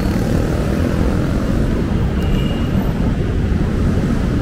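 Steady low rumble of road traffic with vehicle engines running.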